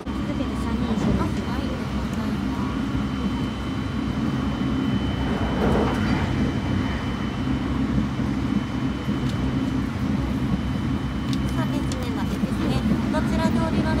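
Cabin noise of a limited express train running at speed: a steady low rumble from wheels on rails and the running gear, with a thin high steady tone that stops shortly before the end.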